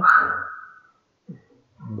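A man's voice lecturing in Spanish: a phrase ends with a breathy trail that fades over about a second, a short 'eh?' follows, and speech starts again near the end.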